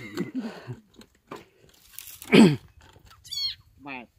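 Frog calling several times as it is dug out of dry mud. There is one loud call falling steeply in pitch about two seconds in, then two shorter calls near the end, the first high and the second pulsing.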